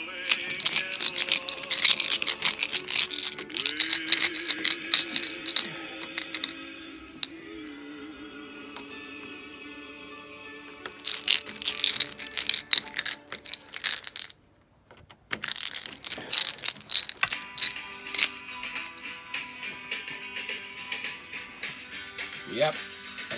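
Background music over bursts of rapid, irregular metallic clicking and rattling from a screwdriver working out the screws of a door lock's faceplate.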